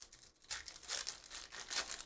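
Plastic trading card pack wrapper torn open and crinkled by hand: a run of sharp crackling rustles that grows busier about half a second in.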